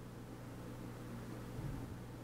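Faint room tone: a steady low hum with light hiss, no distinct event.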